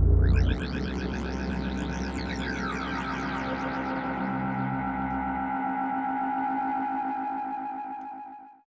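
Closing bars of a live electronic track: the heavy bass cuts out about half a second in, leaving a held synthesizer chord with swirling, echoing delay sweeps that fades out at the end.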